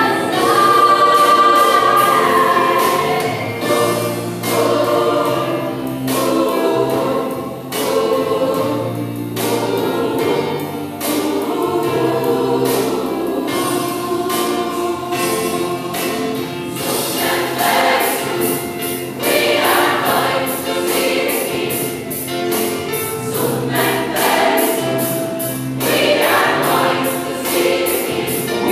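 Large gospel choir singing a lively song, with sharp regular beats running through it; the sound grows fuller and brighter in the second half.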